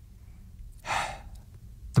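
A man's single audible breath into a studio microphone, a short sigh-like rush of air about a second in, over a faint low hum, with the start of speech at the very end.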